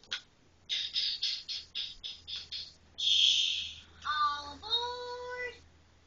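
Sounds played by a speech-practice app on an iPad: a quick run of short rattling bursts, a brief loud hiss about three seconds in, then a few held, steady-pitched sung-like tones.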